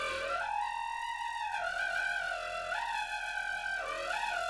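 A wind instrument built from PVC pipe playing a long held high note with strong overtones. The note dips in pitch and comes back up a couple of times.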